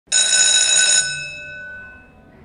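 Opening audio logo sting: a bright, bell-like cluster of high ringing tones starts suddenly, holds for about a second, then drops and fades away.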